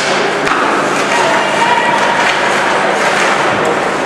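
Ice hockey play heard in a rink: a steady hubbub of spectators' voices with a few sharp knocks of sticks and puck, the first right at the start and another about half a second in.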